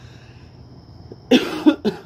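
A man coughing: three short coughs in quick succession, starting a little over a second in.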